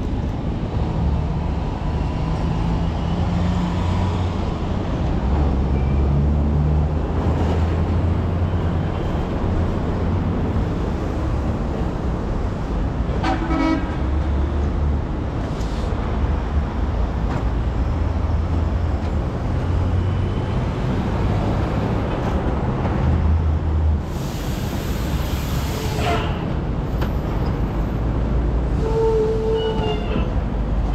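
Heavy road traffic rumbling steadily, with vehicle horns tooting a few times and a brief hiss about three-quarters of the way through.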